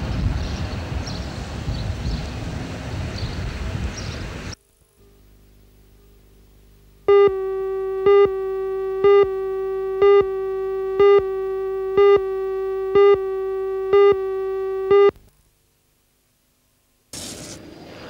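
Steady background noise that cuts off after about four seconds, then a videotape countdown leader: a steady electronic line-up tone with a louder beep about once a second for about eight seconds, ending abruptly.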